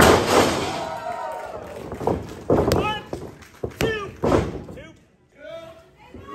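A wrestler slammed down onto the wrestling ring's mat: one loud thud right at the start, followed by shouting from a small crowd that fades away, with a few sharper knocks a couple of seconds in.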